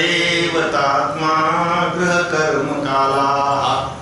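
A man chanting a verse in a melodic voice, each syllable drawn out on held notes in short phrases, trailing off near the end.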